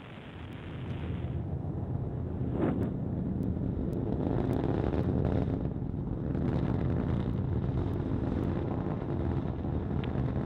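Delta IV rocket in powered ascent, its RS-68 main engine and two solid rocket motors burning: a low rumble that swells over the first two seconds and then holds steady.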